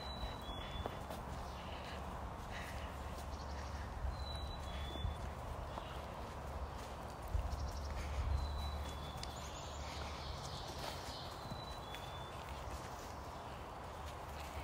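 Footsteps on a leaf-littered forest trail over a steady hum of distant highway traffic, with short high bird chirps a few times.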